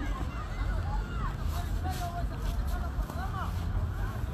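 A crowd of spectators talking over one another, with a steady low rumble of wind on the microphone.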